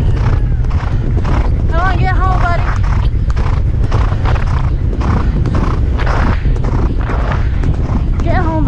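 A Thoroughbred galloping on turf, its hoofbeats at roughly two strides a second, under a heavy rumble of wind on the helmet-mounted camera's microphone. A brief high, pitched call about two seconds in.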